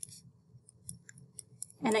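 Pen writing on a paper worksheet: a series of faint, short, dry scratches and ticks from the pen strokes.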